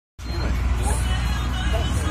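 Fishing boat's engine running with a steady low rumble under wind and sea noise, with faint voices in the background.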